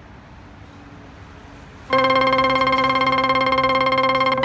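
Faint street ambience, then about two seconds in a loud, steady synthesizer-like keyboard tone starts abruptly and holds: the song's opening.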